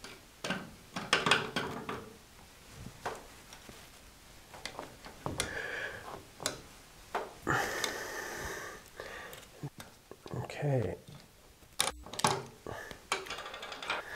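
Vise-Grip locking pliers clamped onto a small steel pulley, pinching its axle to hold it in place: scattered metal clicks and knocks, with a longer scraping stretch about halfway through.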